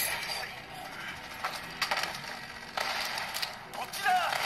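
Sound of the Modern Combat shooter game playing on a smartphone: cutscene effects with several sharp hits and clatter, and some indistinct character voice.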